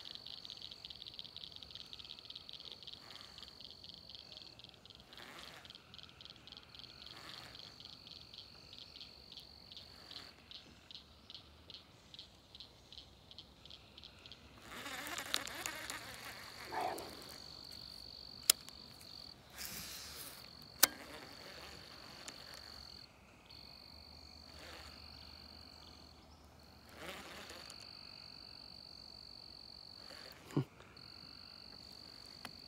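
Faint evening chorus of insects and frogs: a steady high-pitched insect trill throughout, with a run of pulsed calls at about two a second over the first half. Two sharp clicks stand out around the middle.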